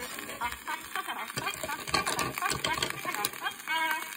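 A woman's rapid giggling laughter on a 1928 record, a comic laughing break in the song, with the band dropping out under it.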